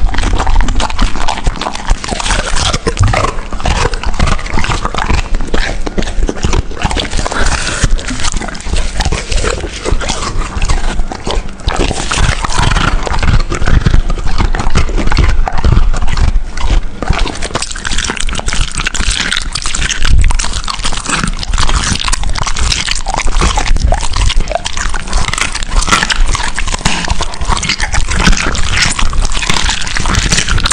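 A large dog chewing raw meat and bone right at the microphone: a steady, rapid run of wet crunches, clicks and smacks as it bites and gnaws.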